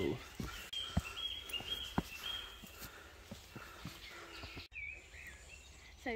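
Footsteps on the planks of a wooden footbridge, a few soft thuds about a second apart, with a bird singing short high notes over a quiet outdoor background. About two-thirds through, the sound breaks off abruptly, and a single high bird call follows.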